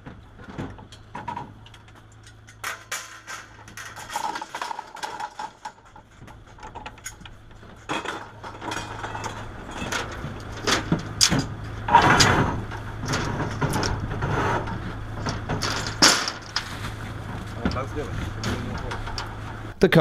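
A traffic management truck's engine running with a steady low hum, with scattered clunks and knocks of traffic cones and cone bases being handled on its rear platform, more frequent in the second half.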